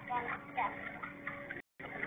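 A person's voice speaking briefly over a steady low hum; the sound drops out completely for a moment near the end.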